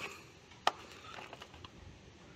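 A single sharp knock about two-thirds of a second in, as the jump starter's plastic case is handled and turned over on concrete, with faint background hiss the rest of the time. The compressor is not running.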